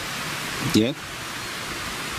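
A steady, even hiss with no rhythm or pitch, and a man's voice briefly saying "yeah" about a second in.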